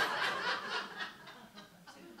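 Soft, breathy laughter, dying away about a second and a half in.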